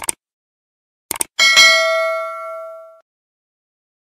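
Subscribe-button sound effect: a short mouse click, then two quick clicks about a second in, followed by a notification-bell ding that rings for about a second and a half and fades out.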